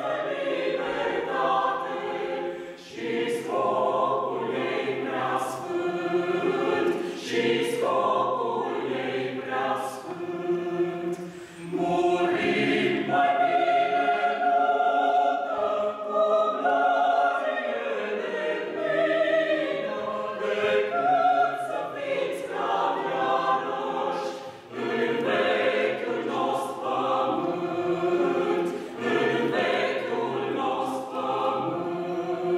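A small mixed choir of men's and women's voices singing unaccompanied in parts, with sustained chords and a few brief breaks between phrases.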